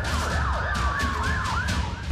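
Several emergency sirens wailing together, overlapping, their pitch sweeping up and down a few times a second, cut off suddenly near the end, over a heavy low beat.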